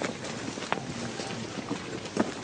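Wind noise on the microphone over the sound of a large crowd on foot, with a sharp click about three quarters of a second in.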